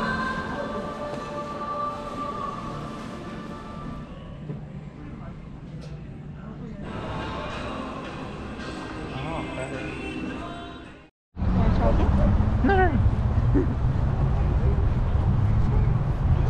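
Covered shopping-arcade ambience with old-style Japanese songs playing over the arcade's speakers. About eleven seconds in it cuts to a louder low wind rumble on the microphone outdoors, with a few short sliding high sounds over it.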